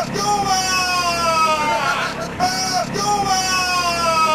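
A man's voice in two long wordless calls, each held for over a second and sliding slowly down in pitch.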